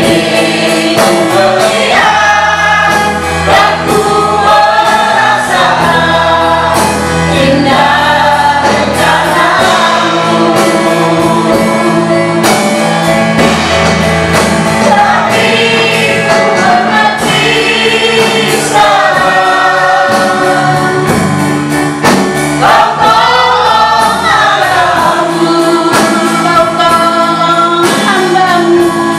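A mixed group of men and women singing an Indonesian worship song together into handheld microphones, accompanied by electric keyboard and guitar. The voices carry a slow melody over sustained keyboard chords.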